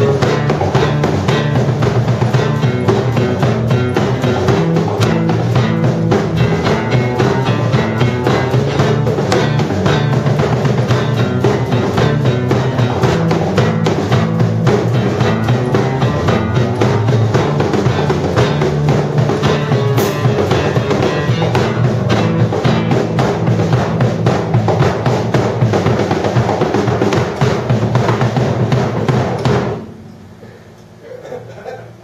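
Live band playing an instrumental passage: a drum kit keeping a steady beat under guitars, stopping abruptly at the very end.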